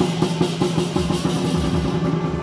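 Lion dance percussion: a large Chinese barrel drum beaten in a fast, even run of strokes, with cymbals clashing along with it.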